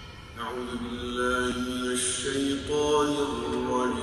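A man's voice begins melodic Quran recitation (tilawa) about half a second in, with long held notes and slow ornamented turns in pitch, inside a large mosque hall.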